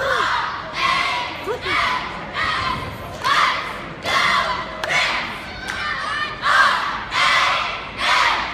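Cheerleading squad shouting a cheer in unison, one loud shout roughly every second in a steady rhythm, with some thuds.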